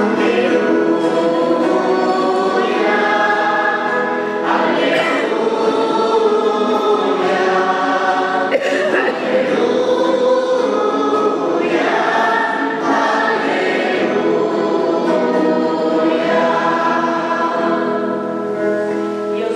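Church choir singing a liturgical chant, accompanied by guitar, in long sustained phrases.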